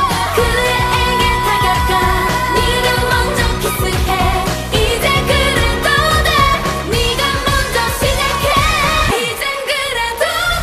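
K-pop dance song performed live by a female group: women's voices singing over a steady electronic beat and bass. Near the end the bass and beat drop out for about a second.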